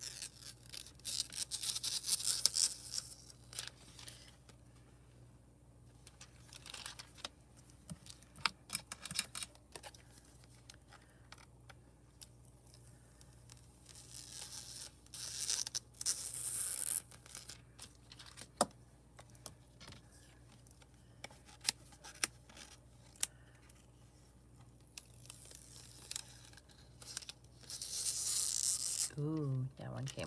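Clear plastic transfer sheets being peeled off hot-foiled cardstock: a crackly peeling sound in several separate pulls of a second or two each, with small clicks and taps of handling in between.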